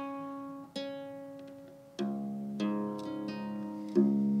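Single ukulele strings plucked one at a time and left to ring while the instrument is retuned to a new tuning. A higher note sounds twice, then about halfway through a lower note comes in, followed by a few quicker plucks.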